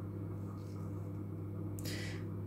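A steady low electrical hum, with a brief soft hiss near the end.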